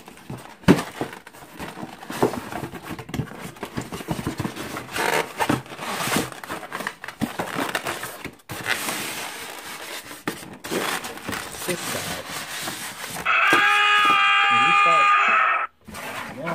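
Cardboard packaging being handled: an inner box sliding out of its sleeve and a lid being lifted, with scraping, rustling and clicks. About 13 s in, a loud, sustained edited-in sound effect made of several stacked pitched tones comes in for about two and a half seconds, then cuts off suddenly.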